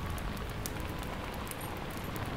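Steady rain falling, with scattered sharp drip ticks over an even hiss and a low rumble underneath.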